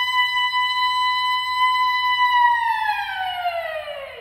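Unaccompanied female soprano holding one high note with no words, then sliding smoothly down about an octave over the last second and a half.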